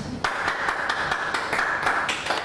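Applause: hands clapping fast and densely, starting about a quarter second in.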